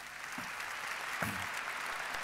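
Large audience applauding, the clapping steadily swelling in loudness.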